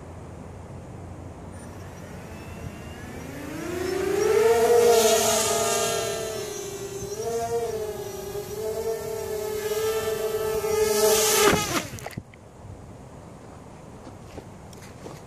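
Hovership MHQ 3D-printed folding quadcopter's electric motors and propellers. Their whine rises as it lifts off about three seconds in, holds a steady hover with brief pitch wobbles, then cuts off suddenly near the end. It is flying on a battery that the pilot thinks is almost dead.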